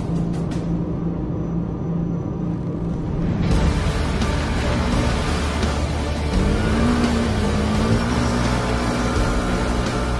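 Dramatic background music with a low steady drone; about three and a half seconds in, the noise of side-by-side UTV engines revving joins it, with an engine note rising and falling in the second half.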